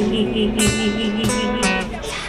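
Acoustic guitar strummed in steady chords, with a cajón beating time under it: a live acoustic song accompaniment, a few low drum hits landing about a third of the way in and again near the end.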